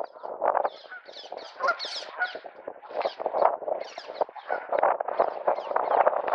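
A cormorant bathing: rapid, irregular splashing as it dips and beats its wings on the water, with bird calls mixed in.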